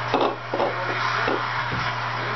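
Steady hiss and low hum, with a few soft knocks as an aluminium beer can is set down on a table just after the start.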